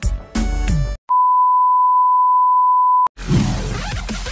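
A short stretch of music breaks off about a second in, then a single steady electronic beep, one pure high tone, holds for about two seconds and cuts off suddenly. Electronic dance music with a heavy beat starts just after.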